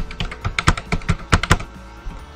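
Typing on a computer keyboard: a quick, irregular run of about a dozen key clicks as a phone number is entered.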